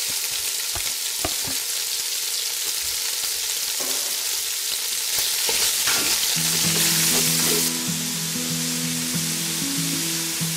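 Sliced pork belly sizzling in hot oil in a pot, with a few knocks of a wooden spatula as it is stirred.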